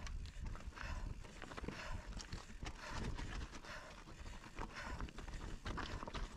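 Commencal mountain bike rolling fast down rocky, loose-stone trail: tyres crunching and knocking over stones, with the bike rattling in irregular clatters over a steady low rumble.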